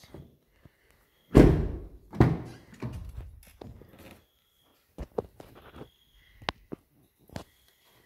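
Car doors of a 2012 Kia Soul being handled: one heavy door thunk about a second and a half in, then a string of lighter knocks and clicks.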